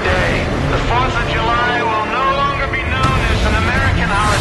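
Film sound effects of a jet fighter flying, with engine noise and indistinct voices mixed over it.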